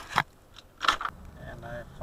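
Handling noise from a dashcam being turned on its mount by hand: two sharp crackling knocks close on the microphone, about three quarters of a second apart, the second the louder.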